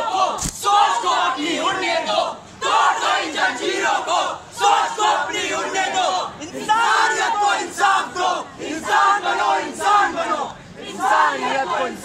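Street-play performers shouting lines together, loud chanted phrases a second or two long following one another with short breaks. There is one sharp knock about half a second in.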